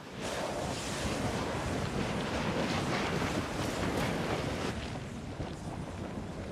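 Molten lava churning and surging in an active lava lake: a steady rushing noise that eases a little about three-quarters of the way through.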